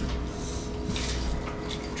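Room tone in a small room: a steady low hum with a couple of faint steady higher tones, and a few faint brief rustles.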